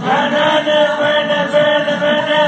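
Music: a man singing long, held notes.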